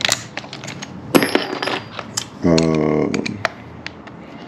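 Irregular light metallic clicks and clinks of hand tools and hardware as nuts and bolts are worked on, with one sharper ringing clink about a second in.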